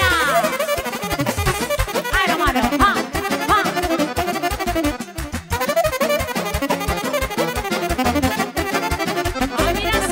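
Live Romanian folk dance music in the ardelene style, with a saxophone playing a fast melody over a steady, quick beat.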